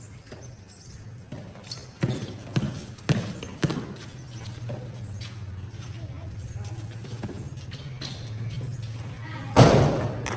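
A basketball being dribbled on a paved court: four bounces about half a second apart, two to four seconds in, with voices in the background. A short loud burst comes near the end.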